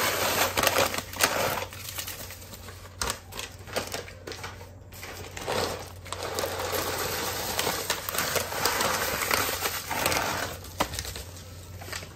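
Dry boxed stuffing mix poured and shaken from a bag into a slow cooker, the crumbs falling in a quick stream of small dry clicks. It eases off for a few seconds in the middle, comes back stronger, and tails off near the end.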